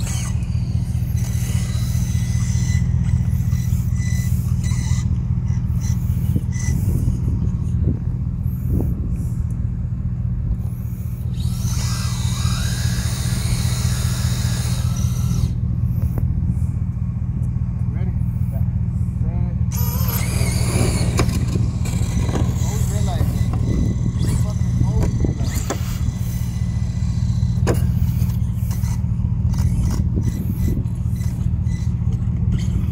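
Radio-controlled drag cars making passes over a steady low rumble: a high whine with tyre noise rises about twelve seconds in and lasts a few seconds, and a shorter one comes about twenty seconds in.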